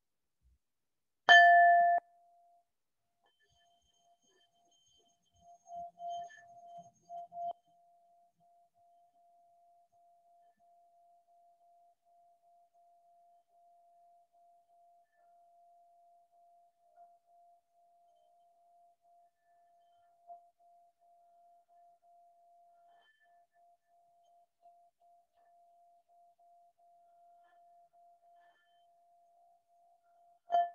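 A singing-bowl tone struck once about a second in: a loud, bell-like ring with several overtones that cuts off sharply after under a second. A faint steady hum at the same pitch then rings on, with a few soft knocks a few seconds in.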